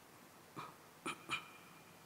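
An animal gives three short, faint, high-pitched yelps, the last two close together.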